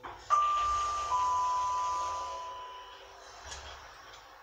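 Lift arrival chime: two electronic notes, a higher one followed about a second later by a slightly lower one, each held and fading away, over a low rumble from the lift car.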